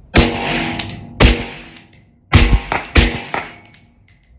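Four suppressed shots from a 12-inch LMT 5.56 piston rifle fitted with a titanium Centurion Maximus L556 low-back-pressure suppressor, spread over about three seconds, each with a short ringing tail. The rifle's gas regulator is in its unsuppressed setting.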